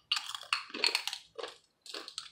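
Crunching on thin purple sweet potato chips with rosemary herb seasoning: about five crisp, irregular bite-and-chew crunches.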